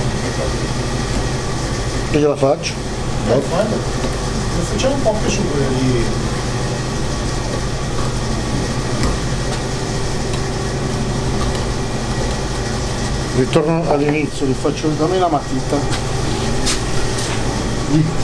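Steady low machine hum in a workshop, with people talking now and then and a few faint clicks.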